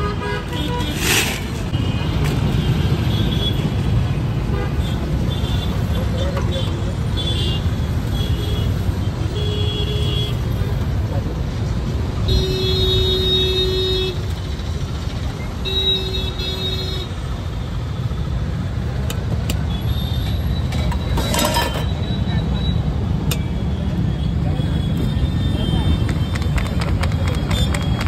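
Street traffic noise with a steady low rumble, and vehicle horns honking: one long toot about twelve seconds in, a shorter one around sixteen seconds, and briefer beeps scattered through.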